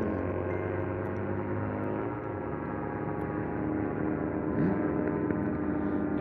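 Gyrocopter engine and propeller droning overhead as it flies past: a steady, many-toned hum whose pitch drifts slowly as it passes.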